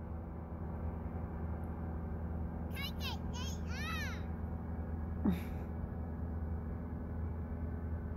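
Steady drone of a paramotor engine, with a young child babbling a few times about three to four seconds in and giving one short falling cry a little past five seconds.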